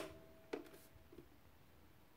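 Faint click about half a second in with a short ringing tone after it, then a softer tick: the spring inside the hollow plastic shoulder stock of a WE Mauser M712 airsoft pistol resonating as the stock is handled.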